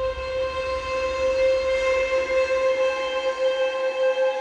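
Background music: a sustained, droning chord of held tones, with a low rumble underneath that fades out about three seconds in.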